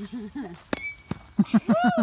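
A baseball bat hits a tossed apple with one sharp smack about two-thirds of a second in, followed by laughter and a shout of "Woo!".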